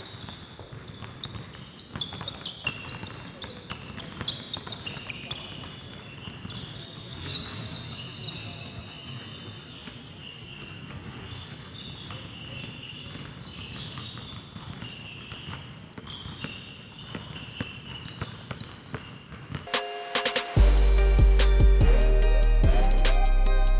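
Basketballs being dribbled on a hardwood gym floor by several players at once: a quick, uneven patter of bounces. About twenty seconds in, loud music with a drum beat cuts in.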